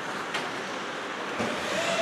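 Ice rink sound: steady arena noise with skate blades scraping on the ice and a single sharp click, like a stick on the ice, about a third of a second in. A faint steady tone comes in near the end.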